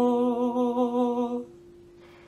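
A man's voice holding one long note with a slight vibrato, which stops about a second and a half in, over a single acoustic guitar note left ringing softly underneath.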